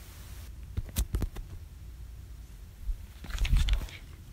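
Handling noise of a phone being picked up and repositioned: a few light knocks about a second in, then a louder cluster of low bumps and rubbing near the end.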